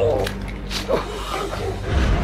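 A man groaning and crying out in pain as he is attacked on the ground: one wavering cry at the start, then shorter strained sounds about a second in.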